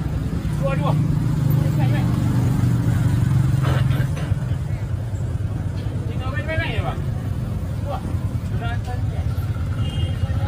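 A road vehicle's engine running with a steady low hum, louder through the first four seconds, while scattered voices talk over it.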